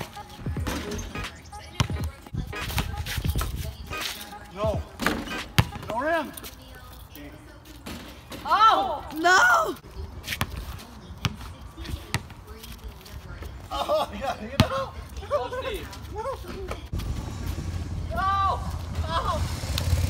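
A basketball dribbled on an asphalt driveway, with short irregular bounces all through, and voices calling out now and then.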